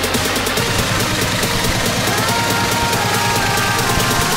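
Electronic dance music with a steady beat, laid over the footage.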